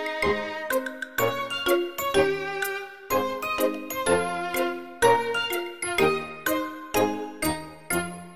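Background music: a light melody of bright, quickly fading notes, several a second.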